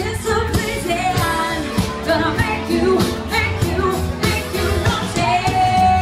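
A live band playing pop-rock dance music with a singer, over a steady beat, heard inside a large tent.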